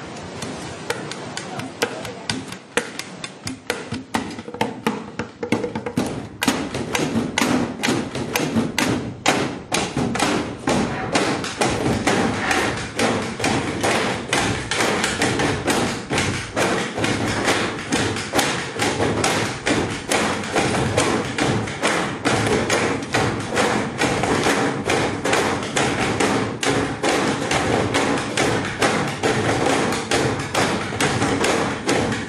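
School desks and chairs being slapped and knocked in rhythm by a roomful of students, a fast, dense drumming of thuds and knocks. It starts sparse and builds louder and thicker over the first several seconds, then keeps going.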